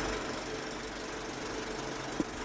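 Film projector sound effect: a steady mechanical whirring rattle with a faint hum.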